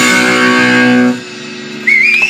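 A hardcore punk band's distorted electric guitars hold a final chord, which cuts off about a second in and leaves only a low, steady amplifier hum. Just before the end, a high pitched tone rises.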